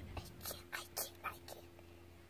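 Hushed whispering: about six short, breathy syllables in the first second and a half, over a faint steady hum, then quieter.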